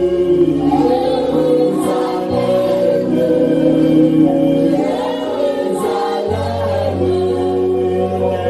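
Gospel worship song sung by a group of voices with a man leading into a microphone, over held bass notes that shift pitch a few times.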